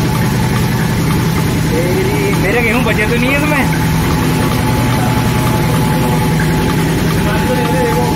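Flour mill (chakki) running, a loud steady machine drone with a constant tone through it. Voices are faintly heard over it a couple of seconds in and again near the end.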